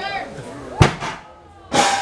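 A 370 lb strongman carry block dropped onto the stage floor, giving one sharp, heavy thud about a second in. Laughter comes just before it, and a loud burst with a falling vocal tone, like a shout, near the end.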